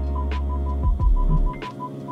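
Parking-sensor warning beeping from a VinFast VF8: a high tone repeating rapidly, several beeps a second, as the car reverses close to an obstacle, over a low steady hum.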